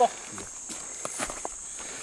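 Footsteps and rustling in dry grass and brush, with scattered light clicks, behind a faint steady high hiss.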